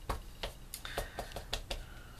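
About a dozen light clicks and taps in quick, irregular succession, from craft tools being handled on a work table.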